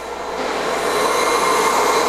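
Ruwac FRV100 compressed-air venturi vacuum running, a steady rushing hiss of air as its floor tool on a 1.5-inch hose sucks up starch and bentonite powder, swelling slightly in the first half second. A faint high whistle sits over the rush.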